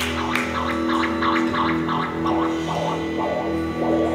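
A rock band with a chamber orchestra playing an instrumental passage live, held low tones under a run of short repeated notes.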